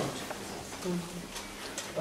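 Quiet, indistinct voices in a hall full of seated people, with a few soft clicks.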